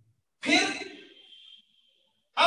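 A man sighs once, about half a second in, and the sigh fades away over about a second.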